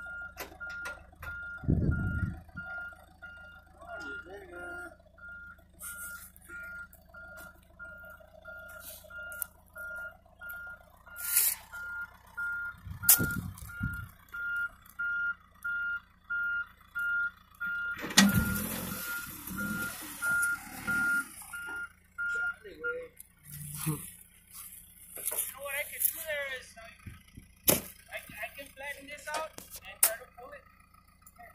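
Backhoe loader's back-up alarm beeping in a steady rapid series that stops a little over 20 seconds in, over the low hum of its engine running. A few louder low rumbles break in, the loudest about 18 seconds in.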